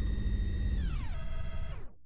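Electronic tone over a deep rumble, held steady and then gliding down in pitch about a second in before fading out.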